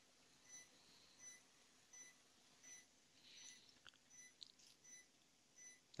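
Faint patient-monitor heartbeat beeps: a short high tone about every three-quarters of a second, in step with a heart rate near 80 a minute. A soft hiss and a couple of faint clicks come about halfway through.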